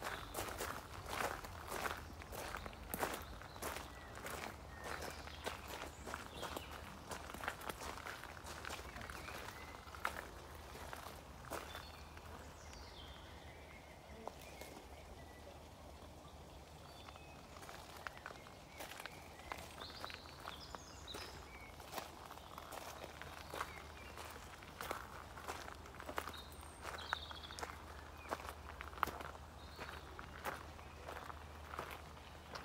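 Footsteps crunching on a gravel path, about two steps a second. They pause for several seconds around the middle, then walk on.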